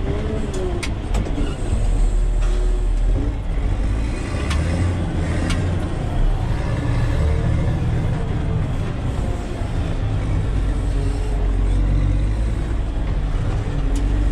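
Caterpillar 120K motor grader's diesel engine running steadily, heard from inside the cab, with a few sharp clicks near the start and a couple around the middle.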